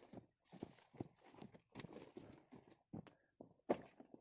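Footsteps on a dry dirt path strewn with dead leaves and grass, about two to three steps a second, with some rustling. One sharper, louder knock comes near the end.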